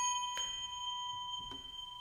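A small brass singing bowl, struck once, rings out as the song's final note: a clear high ringing tone that slowly fades, with a couple of faint clicks, then stops suddenly near the end.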